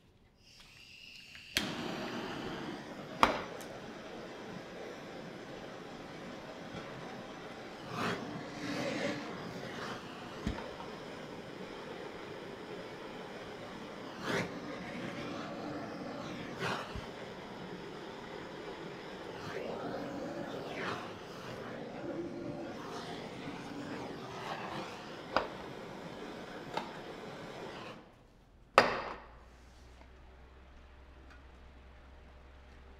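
Hand-held butane blowtorch lit with a click, its flame hissing steadily while the pulled sugar is handled, with scattered sharp taps. The flame is shut off with a sudden stop near the end, followed by a click.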